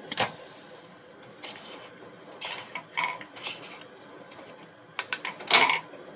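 Plastic clicks and rattles as the drain pump filter of a GE combination washer-dryer is twisted loose and pulled from its housing, with a louder burst near the end as it comes free and leftover water spills out because the drain was not fully emptied.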